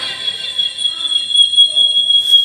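Microphone feedback: a steady, high-pitched squeal as a handheld mic is held close to a Martin F10 speaker's horn tweeter. The squeal sets in only at close range, about a metre, which the seller credits to the BMB AS2000 echo unit's anti-feedback circuit.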